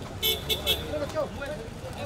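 Three quick toots of a vehicle horn in close succession, over background voices and traffic rumble.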